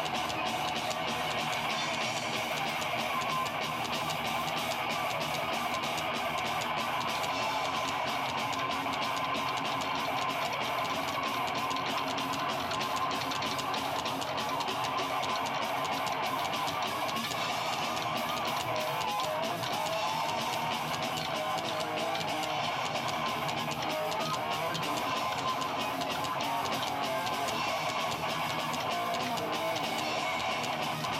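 A live band playing, with strummed guitar to the fore over bass and a drum kit, steady throughout.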